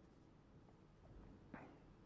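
Near silence, with faint scratching of a pen on paper and a single small tick about one and a half seconds in.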